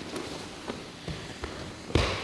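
Bodies moving on a grappling mat: soft thumps of hands, feet and backs against the mat, with the rustle of gi cloth. A louder thump comes near the end.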